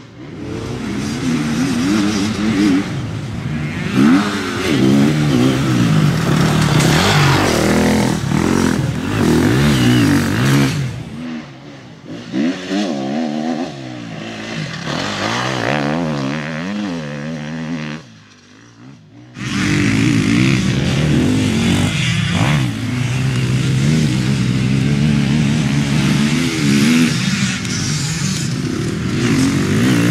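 KTM 250 four-stroke single-cylinder enduro bike engine revving hard, its pitch repeatedly rising and falling through throttle bursts and gear changes on a dirt course. The sound drops away briefly a little past halfway, then returns as loud.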